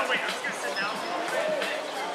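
Voices of volleyball players calling out across an outdoor court, with a couple of short, sharp ball impacts.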